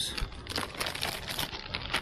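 Plastic wrapper of a frozen pizza crinkling as it is picked up and handled: a rapid, irregular crackle.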